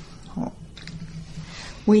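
A woman's speech pausing mid-sentence: a faint, low, held hesitation sound while she gathers her thoughts, then she starts speaking again near the end.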